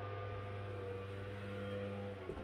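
Steady low hum with a few fainter, higher tones held above it.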